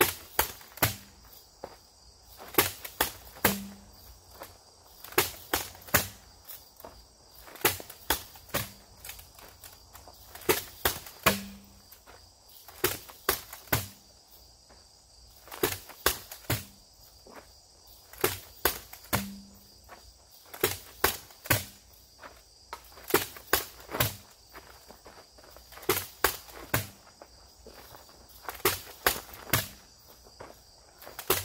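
Steel hand axe and punch shield striking a pell of stacked rubber tires: sharp blows in quick clusters of two or three, repeating every second or two, a few with a short low thud. Insects chirring steadily behind.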